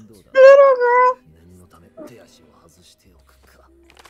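A loud, high-pitched two-part vocal cry near the start, lasting about a second, its pitch held level and dipping slightly in the second part. Faint speech follows.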